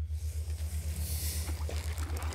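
A boat under way on a lake: an even hiss of water and wind over a steady low throb that pulses about ten times a second.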